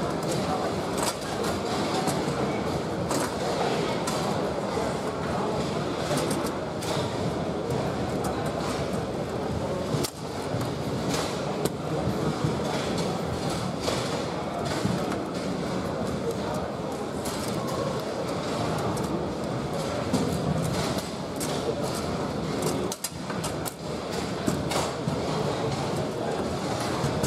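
Foosball play on a Bonzini table: repeated sharp clicks and knocks of the ball against the figures and table walls and of the rods, over a steady murmur of indistinct voices in a large hall.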